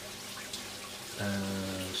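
Water from an aquaponics grow bed's bell siphon draining through a perforated PVC down tube into the fish tank, a steady soft splashing hiss; the many holes break up the flow to cut the noise and aerate the water.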